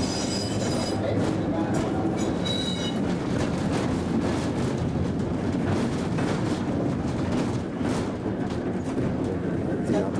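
Old wooden streetcar running along its track, heard from inside the car: a steady rumble with wheels clicking over the rail joints. A high wheel squeal comes in the first second and again at about three seconds in.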